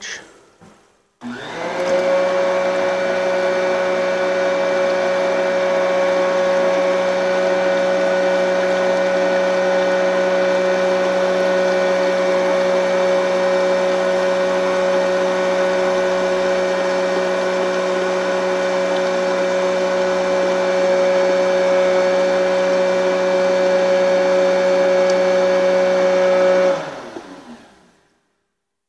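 FLUX F457 universal electric motor driving an F427 sanitary drum pump. It starts about a second in, runs with a loud, steady whine while pumping a test batch, then cuts off and winds down near the end as the batch controller stops it at the set batch amount of 15.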